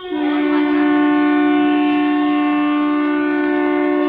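A loud, steady horn-like blast of two pitches sounding together, held unbroken for about four seconds.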